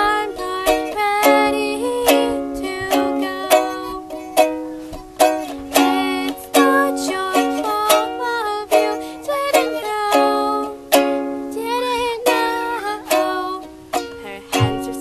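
A ukulele strummed in a steady rhythm of chords, with a woman's voice singing over it; she holds one wavering note about twelve seconds in.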